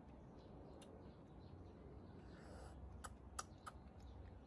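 Near silence: room tone with a low background hum, broken by a faint click under a second in and three quick sharp clicks about three seconds in.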